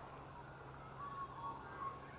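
Quiet outdoor background with a faint steady low hum. A few faint, thin whistled tones come in about halfway through.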